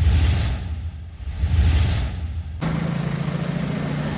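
A logo sound effect: two whooshing swells over a deep rumble. About two and a half seconds in it cuts abruptly to street sound with a vehicle engine idling steadily.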